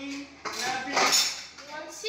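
Dishes and cutlery clinking and clattering as they are washed at a kitchen sink, with a voice talking over it.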